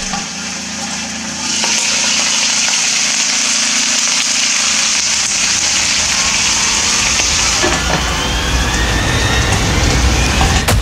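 Whole rock cod frying in an electric frying pan: a steady sizzle that grows louder about a second and a half in, with small pops and crackles.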